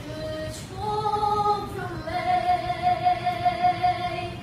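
A young boy singing solo in a high, clear voice: a few short notes, then a long note held from about halfway through, with vibrato.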